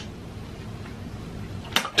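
Steady low room noise with no distinct event, and a short click near the end.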